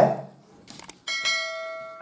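Bell-chime sound effect of an on-screen subscribe-button animation: a couple of faint clicks, then a single bright ding about a second in that rings on and slowly fades.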